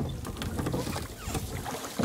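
Wind on the microphone in a rowboat on open water: a low, uneven rumble with a faint wash of water and reed noise.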